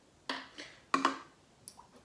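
A few short clicks and knocks from a plastic squeeze bottle and a metal tablespoon being handled over a stone counter, as the bottle is set down; two sharper ones come about two-thirds of a second apart, with a fainter one near the end.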